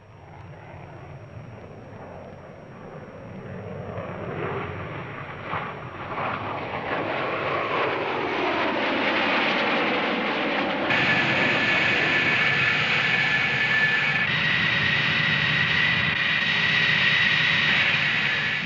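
Military jet engine noise building from faint to loud over several seconds, with pitch sweeping as a jet passes overhead. From about eleven seconds in, a loud, steady high-pitched turbine whine takes over and shifts abruptly a few seconds later.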